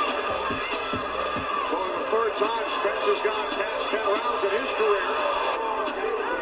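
Televised boxing broadcast audio: commentators talking continuously, with music underneath and a few short sharp clicks.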